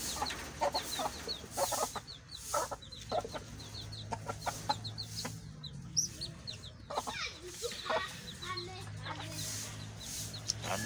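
Domestic chickens clucking repeatedly, with a steady run of short high chirps through the whole stretch.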